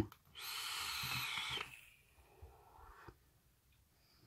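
A person exhaling a breath of vapour from an e-cigarette: one breathy rush lasting about a second and a half, followed by a few faint clicks.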